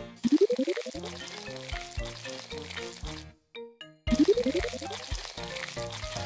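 Cartoon sound effect of a dental syringe filling a tooth with white resin. It comes twice, about four seconds apart, each time a rising swoop trailing into a hissy, sizzling noise, over background children's music.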